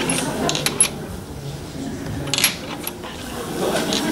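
Steel nails clinking against one another as they are laid in a row on a table: light metallic clicks in two small clusters, about half a second in and again about two and a half seconds in.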